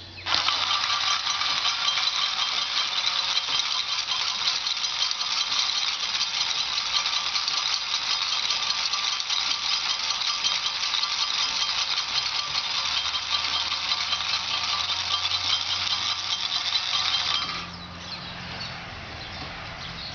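Kinetic wire sculpture running: bent-wire strikers rapidly hitting coiled wire springs and wires, a steady, dense metallic jangling that starts abruptly and cuts off suddenly near the end.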